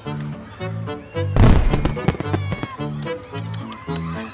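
Background music with a steady, bouncy bass beat. About a second in, a loud firework-like burst cuts in and fades over about half a second with crackles, followed by short gliding whistle-like tones.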